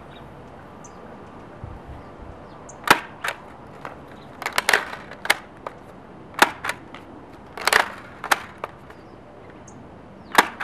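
Nerf Vortex Diatron disc blaster being test-fired, each shot sending two discs, with its lever-arm loading worked between shots: a series of sharp plastic clacks and snaps, the loudest about three seconds in, with clusters around four and a half and nearly eight seconds in.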